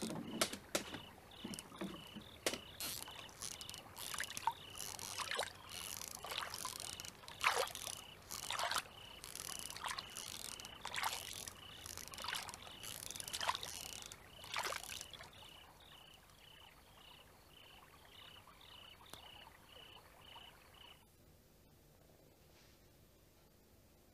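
Oars dipping and splashing in the water as a small rowboat is rowed, about one stroke a second; the strokes stop about two-thirds of the way in. A steady high pulsing chirr runs underneath, and all sound cuts off near the end.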